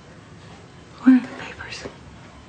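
A brief spoken word or two in a person's voice, soft and breathy, about a second in, over quiet room tone.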